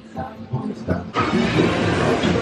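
Busy fairground din of crowd chatter and music with a mechanical rumble. It starts suddenly about a second in, after a quieter moment with a few faint voices.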